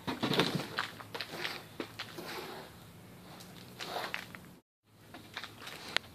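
Hands kneading and squeezing damp organic potting mix, a crackly, crunching rustle that is busiest in the first two seconds and comes again in a few strokes about four seconds in, as water is worked in until the soil binds. It cuts to dead silence briefly near the end.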